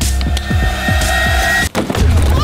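Background music: a beat of deep, falling bass hits under a held steady tone, which cuts off abruptly near the end.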